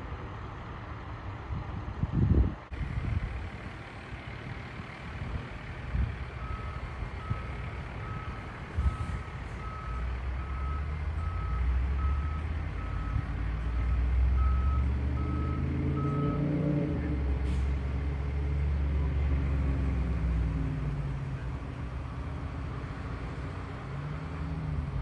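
A heavy truck's reversing alarm beeping steadily, about one and a half beeps a second for some ten seconds, over the low running of its engine, which swells partway through. A low thump comes about two seconds in.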